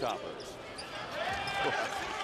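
A basketball being dribbled on a hardwood court, under the steady background noise of an arena crowd.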